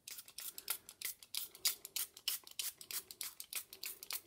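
Small fine-mist spray bottle pumped rapidly, about five short spritzes a second, wetting the painted tag so the paint will run.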